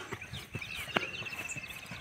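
Footfalls of a runner striding across a grass and dirt track, with birds chirping around them and a fast, even trill starting about halfway through.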